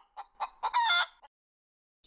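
A hen clucking: a quick run of short clucks, then one longer, higher call about a second in, after which it stops.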